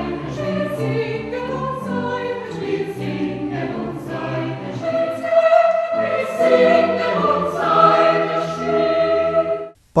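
Mixed choir singing slow, sustained classical choral music with string accompaniment, notes held about a second each; the music cuts off suddenly near the end.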